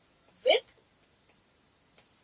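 A woman's voice saying one short word about half a second in, then near silence.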